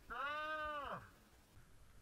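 A single drawn-out vocal cry, one held note lasting about a second that rises slightly and then falls away at the end.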